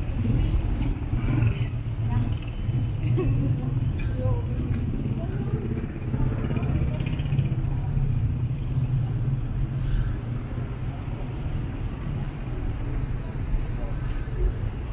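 City street ambience: a steady low rumble of road traffic, with people talking in the background.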